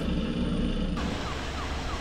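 A faint siren with a fast repeating rise in pitch, coming in about halfway through, over a low steady drone.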